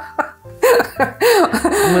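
A woman laughing in a string of short breathy bursts, then beginning to speak near the end.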